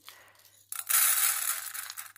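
Dry lentils poured from a glass bowl into an empty saucepan: a dense rattling patter of grains landing on the pan's bottom. It starts about two thirds of a second in.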